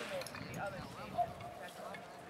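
Indistinct voices of men talking, with one brief knock about a second in.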